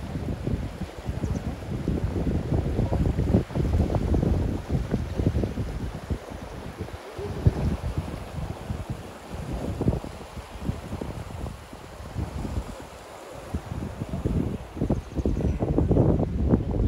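Wind buffeting a smartphone microphone in irregular gusts, a low rumbling that swells and drops, over the rush of a fast mountain river below.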